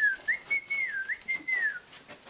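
A person whistling a short tune of about five notes, a single clear tone that dips and rises and ends on a falling note.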